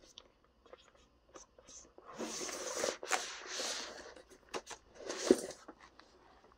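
Zipper on a fabric laptop carrying case being run in two long pulls, then rustling handling of the padded case with a few clicks and a soft knock as a laptop is slid in.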